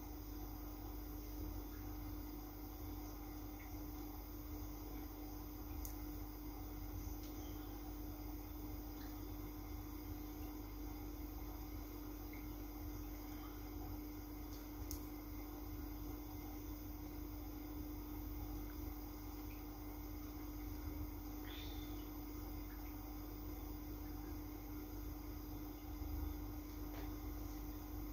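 Steady low hum of room background, holding one constant tone, with a few faint soft ticks.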